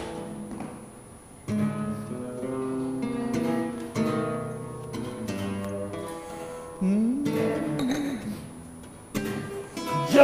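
Solo acoustic guitar playing plucked chords and single notes. A new chord comes in about every two and a half seconds and rings out before the next.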